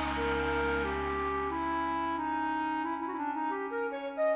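Background music: a slow melody of long held notes.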